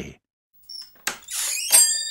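A recorded sound effect: a brief squeaking, scraping sound, then near the end a small bell rings out with a clear, high ring.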